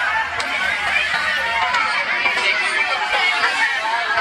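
A crowd of people chattering over one another, many overlapping voices at a steady level with no single voice standing out.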